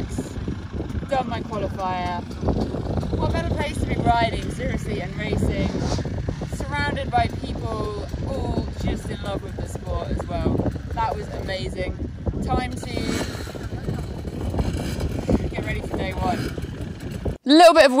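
Strong wind buffeting the microphone, a dense low rumble, with a woman talking underneath and her words largely drowned out. The rumble cuts off suddenly near the end.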